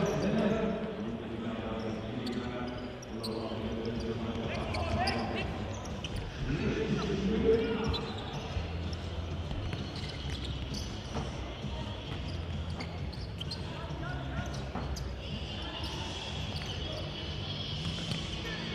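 A football being kicked and bouncing on a sports hall floor in short sharp knocks, with players' voices calling out and a louder shout about seven seconds in, all echoing in a large indoor hall.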